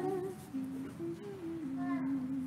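A single voice softly humming a few low notes, rising and falling back. At the start the end of a loud sung phrase dies away with a short echo.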